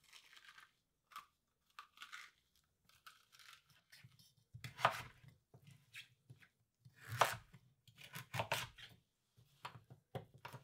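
Chef's knife cutting butternut squash on a wooden chopping board: light scraping and slicing strokes for the first few seconds, then several firmer cuts that each knock on the board, the loudest about seven seconds in.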